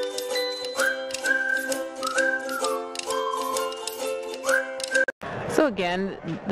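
Upbeat background music with a whistled melody over sustained chords and a light, steady clicking beat. It cuts off suddenly about five seconds in, and a man's voice begins talking.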